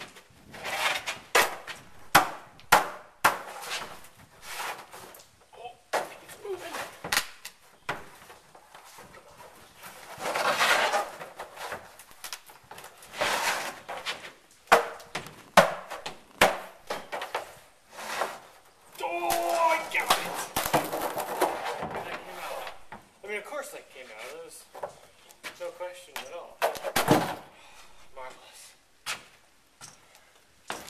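A string of sharp knocks, cracks and taps, with scraping in between, as a cured fiberglass shell is pried and worked free of its waxed mold and handled.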